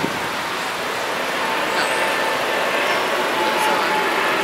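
Steady road traffic noise from cars moving and idling in an airport pickup lane, an even rush with a faint steady hum, growing slightly louder toward the end.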